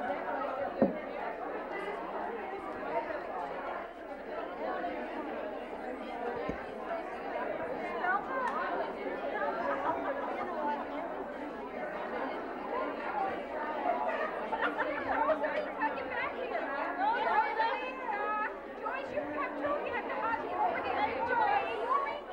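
A roomful of women chatting all at once: a steady hubbub of many overlapping voices with no single speaker standing out. A single sharp knock about a second in.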